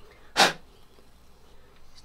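A man's voice saying a single short 'so', then quiet room tone with a few faint small clicks near the end.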